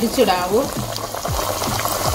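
Parippu vada (split-lentil fritters) deep-frying in hot oil, a steady sizzle. Background music with a melody and a regular low beat runs under it.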